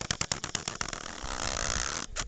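Rapid clicking and rustling handling noise on a handheld camera's microphone, giving way about a second in to a steady rushing noise with a low rumble.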